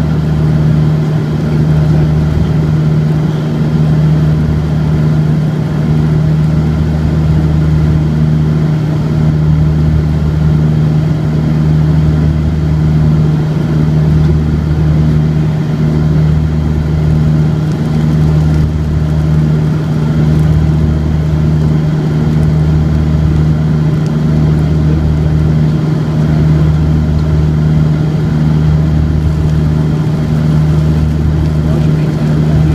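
Cabin noise of a Rockwell Twin Commander Jetprop 840 in flight: the steady drone of its twin Garrett TPE331 turboprops, with a slow throb swelling about every two seconds.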